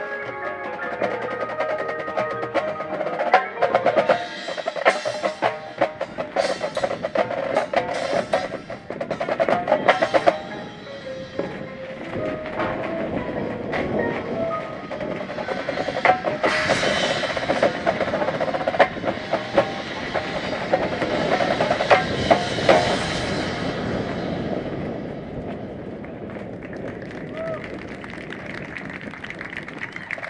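High school percussion ensemble playing the end of its show: marimbas and vibraphones sounding chords over rapid snare, tenor and bass drum strokes. It builds to a loud sustained crash-and-roll climax in the second half, then fades away over the last several seconds.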